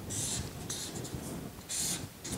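Felt-tip marker drawing on brown paper, three short scratchy strokes as lines of a graph's axes are drawn.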